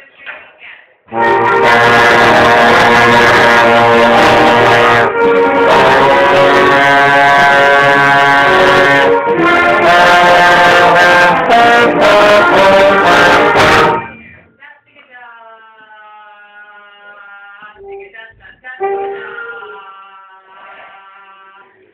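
Tenor trombone played right at the microphone, loud sustained notes starting about a second in, with a couple of note changes, then stopping about 14 seconds in.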